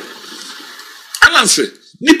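A pause in conversational speech: a faint hiss for about a second, then one short spoken word.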